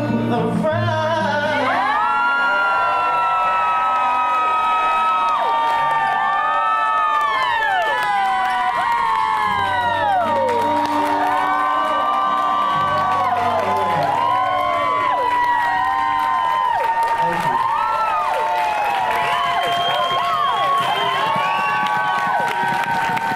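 Dance music playing while an audience cheers and whoops over it. Many rising and falling whoops come in from about two seconds in.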